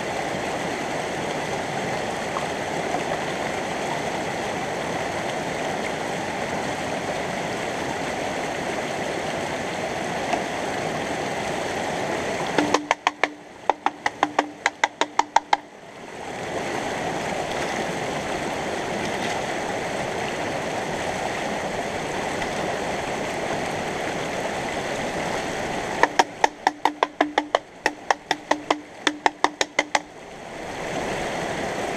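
Steady rush of a shallow, fast-flowing stream. Twice, for about three to four seconds each, the water sound drops out abruptly and a quick run of sharp clicks, several a second, over a low steady tone takes its place.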